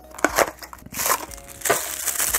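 Paper wrapping being crinkled and pulled off a small toy figure just taken from its box: a few sharp crackles, then a steady crinkling rustle from about a second in.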